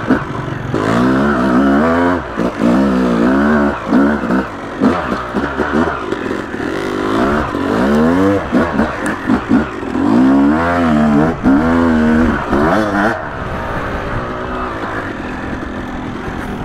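Yamaha YZ250 two-stroke single-cylinder dirt bike engine, ridden on a tight trail, its revs rising and falling over and over with the throttle. It settles into a steadier, lower run for the last few seconds. It pulls on low-end power with no clutch work.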